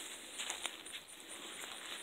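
Faint outdoor background in a dry garden: a low hiss with a few soft ticks and rustles as the camera is carried through the plants, over faint, evenly repeated high chirps of insects.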